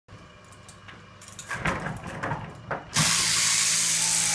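Scuffles and knocks as a sheep is dragged and sat up on a wooden shearing board. About three seconds in, an electric sheep-shearing machine starts suddenly and runs steadily, a loud hiss over a low hum, ready for crotching.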